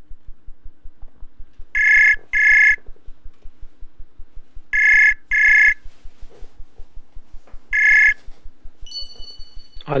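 Outgoing call ringing in a web voice-call app: two double rings about three seconds apart, then a single ring, as the call goes through to the student. Near the end a thin steady high tone sounds as the call connects.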